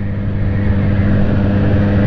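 Motorcycle engine running at a steady cruising speed, with a steady rush of wind and road noise.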